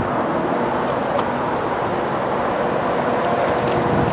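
Road traffic going by: a steady rumble of car engines and tyre noise.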